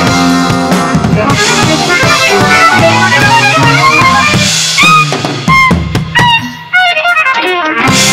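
Drum kit played live along to a jazz-rock fusion band recording. About five seconds in, the band thins to a few accented hits with gliding high notes between them, and the full groove comes back near the end.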